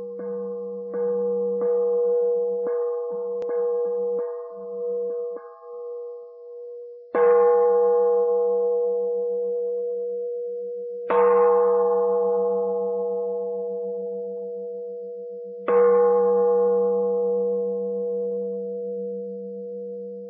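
A Buddhist bowl bell (singing bowl) is struck again and again. About nine light, quick strokes come in the first five seconds, then three full strikes about four seconds apart, each ringing on with a steady tone that fades slowly.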